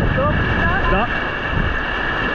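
Steady rush of whitewater river rapids around a raft, mixed with wind on the microphone.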